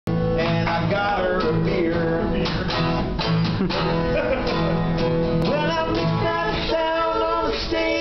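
Acoustic guitar strummed live, with a man singing a ballad over it.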